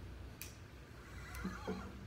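An acoustic guitar being handled before playing: two sharp clicks, then a brief wavering high squeal and a few faint low notes from the strings near the end.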